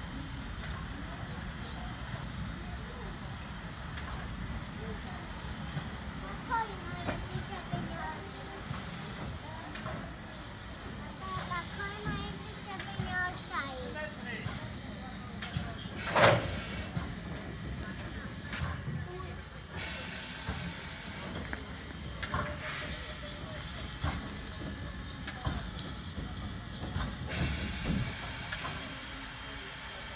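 Ty42 steam locomotive moving slowly at low speed with a steady low rumble and hissing steam, the hiss strongest over the last third. One sharp, loud sound is heard about halfway through.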